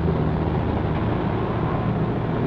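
Street traffic: a steady rumble of motor vehicles, among them a city bus and trucks, moving through an intersection.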